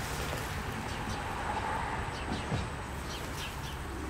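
Outdoor background of a steady low hum and hiss, with faint short bird chirps now and then.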